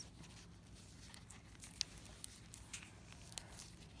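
Faint handling of a plastic toy canister and its wrapping: a few small clicks and crinkles over a quiet room.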